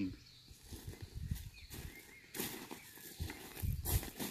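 Quiet outdoor background with a few soft rustles and thumps, one about two and a half seconds in and another near the end.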